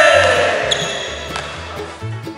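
A man's joyful shout after scoring a basket: a long, loud held cry that slowly falls in pitch and fades over about a second and a half, over background music.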